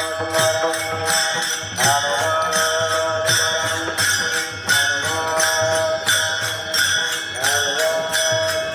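Chorus of men chanting a short devotional refrain over and over, each phrase opening with an upward glide. Small brass hand cymbals (taal) clash in a steady rhythm beneath it.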